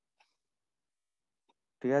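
Near silence, then a man begins speaking shortly before the end.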